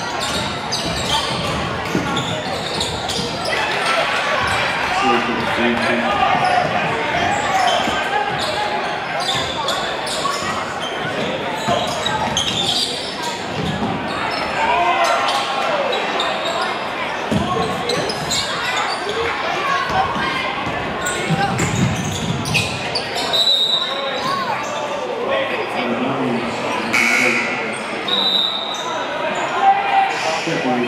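Basketball being dribbled on a hardwood gym floor during live play, with a crowd talking and calling out in a large, echoing gymnasium.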